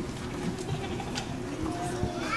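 Low murmur of children's and adults' voices, scattered short voice fragments with no one clearly speaking.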